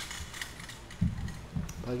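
Faint, quick mechanical clicks and light rattling, with a soft thump about a second in.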